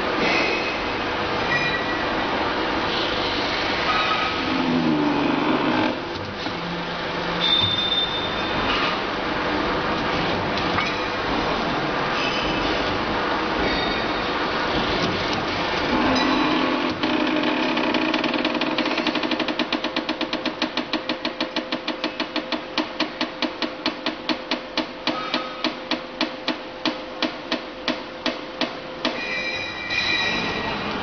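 Workshop machinery running loudly with scattered clanks and a steady tone, turning about halfway through into a fast, even knocking of about three beats a second.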